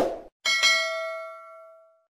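Subscribe-button animation sound effect: the end of a short click sound, then a single bright notification-bell ding about half a second in, ringing with several tones at once and fading out over about a second and a half.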